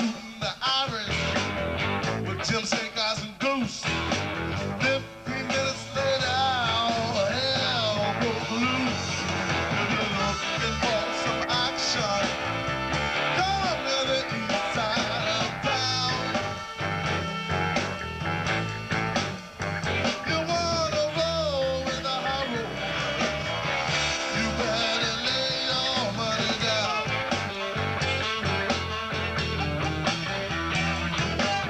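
Funk band playing live, an instrumental stretch: electric bass, guitar and drums under a horn section of trumpets and saxophones, including baritone sax.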